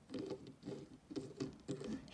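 Fingers handling a plastic LEGO minifigure, turning it around on its stand: a quick run of short, quiet rubbing and clicking noises.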